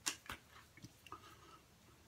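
Hands patting aftershave onto the face: two sharp pats about a third of a second apart at the start, then a few fainter ones over the next second.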